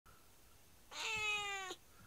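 A domestic cat meows once, a call a little under a second long whose pitch slides slightly down. It is the kind of meow its owners take to be mostly a plea for attention.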